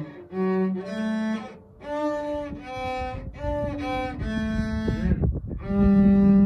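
Cello played with the bow: a slow phrase of sustained notes, each held about half a second to a second, with short breaks between phrases.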